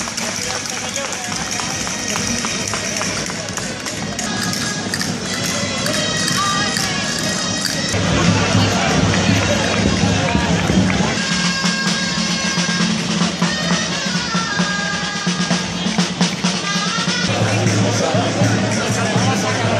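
Traditional folk wind music played in the street over crowd chatter, with a steady low drone coming in about eight seconds in and growing louder.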